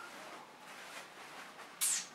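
Faint handling noise from an infant car seat and its fabric canopy, ending in a brief high, falling swish just before the end.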